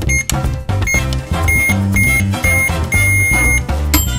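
Electronic beeping from a toy microwave over upbeat background music: a run of short beeps at one pitch, then a longer final beep near the end.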